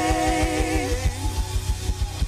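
Live gospel band music at the close of a song: a held chord fades out about a second in, leaving a steady, fast low beat.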